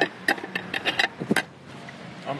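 A quick, uneven run of sharp clicks and knocks, about eight of them within the first second and a half, then a low steady background.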